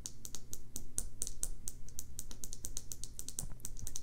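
Rapid light clicking of small keys or push-switches, roughly seven clicks a second, unevenly spaced, over a low hum.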